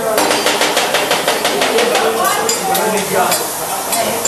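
Metal spatulas clacking rapidly against a steel teppanyaki griddle, several sharp strikes a second, thinning out about halfway through, with restaurant chatter underneath.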